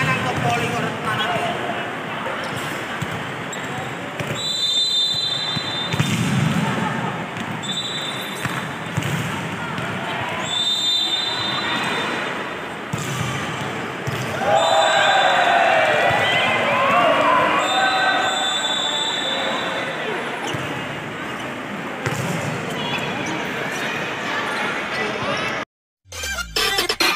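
Indoor volleyball rally in a large sports hall: the ball is struck and bounces on the court, and players call out and shout.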